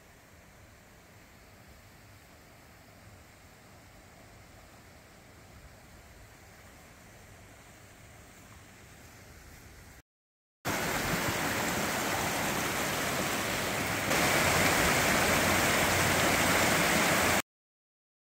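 Faint steady hiss at first, then, after an abrupt cut, a rocky snowmelt creek rushing loud and steady, growing a step louder partway through before cutting off suddenly near the end.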